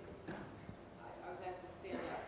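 Faint voices heard off-microphone in a hall, with a few soft knocks.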